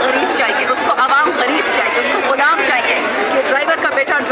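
Speech and crowd chatter: several voices talking over one another in a packed crowd.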